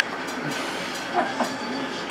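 Steady room background noise with no distinct event, a brief click at the very start and a couple of faint short sounds about a second in.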